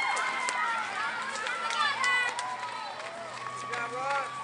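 Several spectators shouting and calling at once, their voices overlapping and unintelligible, with runners' footsteps on a gravel path.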